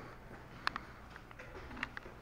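Quiet background with two short, sharp clicks, one a little under a second in and one near the end.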